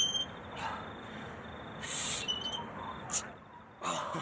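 Short, sharp breaths blown out during barbell curls, four of them, the loudest about two seconds in. A couple of brief high chirps sound at the start and just after the middle.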